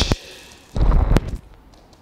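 A forceful exhale blown onto a close microphone during an abdominal crunch, about a second in, lasting about half a second, with a short click at its end.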